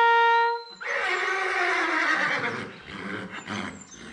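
A brass fanfare ends on a held note, then a horse whinnies for about two and a half seconds, falling in pitch as it fades.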